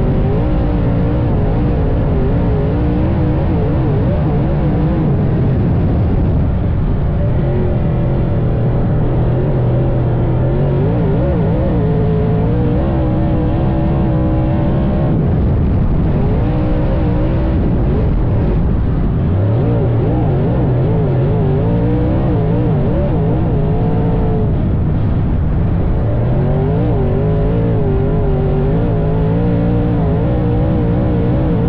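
Dirt late model race car's V8 engine running hard at racing speed, its pitch repeatedly rising and falling as the throttle is worked lap after lap.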